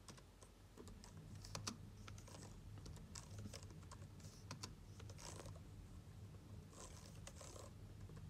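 A string of faint, irregularly spaced keystrokes on a computer keyboard as a file name is typed, over a low steady hum.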